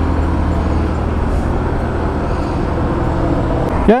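An engine running steadily at idle, an even low drone that cuts off abruptly near the end.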